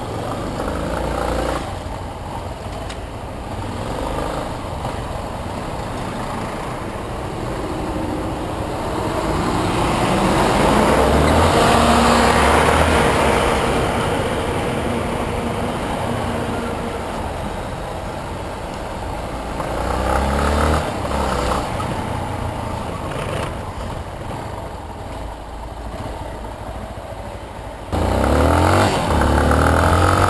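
Yamaha Lander 250's single-cylinder engine running under way through city traffic, with steady traffic and wind noise that swells loud in the middle. The engine revs up about twenty seconds in, then rises sharply near the end as the bike accelerates, its pitch climbing.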